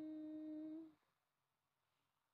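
A person humming a single held "mmm" note that slides up briefly at its start and then stays level, ending about a second in.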